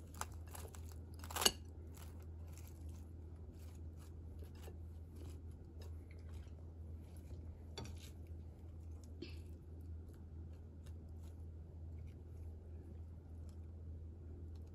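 Crisp lettuce leaves crinkling and crunching softly as they are torn and pressed onto a bread bun, in scattered faint crackles with one sharper crackle about a second and a half in, over a steady low hum.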